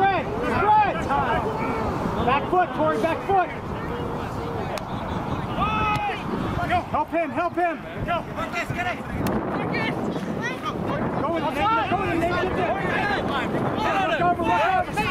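Several voices shouting and calling out across a rugby pitch during open play, in short overlapping bursts throughout.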